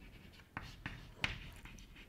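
Chalk writing on a blackboard: a few short, faint scratching strokes as a word is written.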